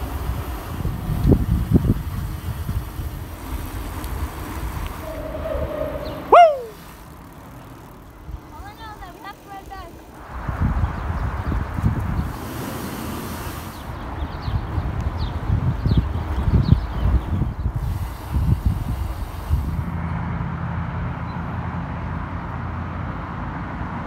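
Rolling and wind noise from a camera moving along with a bicycle on a paved path. About six seconds in there is one short, loud sound that rises sharply in pitch and falls again.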